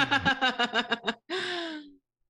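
A person laughing hard in quick rhythmic pulses for about a second, then drawing a long breathy gasp with a slowly falling pitch.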